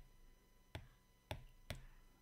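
Faint taps of a stylus tip on an iPad's glass screen as dots are dabbed on with a brush, three short clicks about half a second apart.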